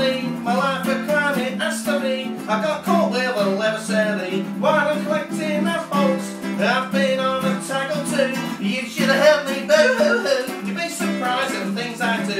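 A man singing a comic song to a strummed acoustic guitar accompaniment, the voice carrying the melody over steady chords.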